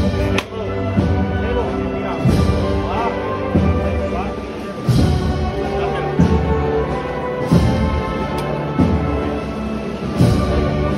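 Wind band playing a slow processional march: held brass and woodwind chords, with a bass drum stroke about every second and a quarter.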